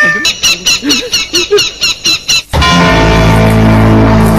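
Film soundtrack: a rapid stuttering sound effect, about five sharp pulses a second for about two seconds, breaks off suddenly, and a loud, low, sustained music drone takes over about two and a half seconds in.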